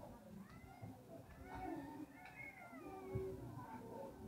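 A cat meowing several times, long calls that rise and fall in pitch.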